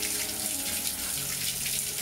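Kitchen tap running into the sink, water splashing over a bunch of green onions rinsed by hand under the stream.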